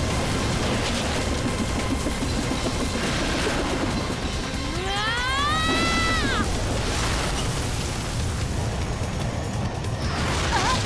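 Cartoon battle sound effects over dramatic background music: a continuous rumble of explosions, with a pitched whine that rises and then falls about five seconds in.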